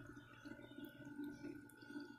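Faint trickling and gurgling of pool water swirling into a floating skimmer bucket, drawn in by the pump's suction, over a faint steady hum.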